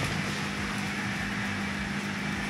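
A steady low mechanical hum over an even hiss, unchanging throughout.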